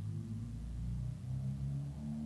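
Faint background music of low, sustained tones that shift slightly in pitch, heard in a pause between spoken sentences.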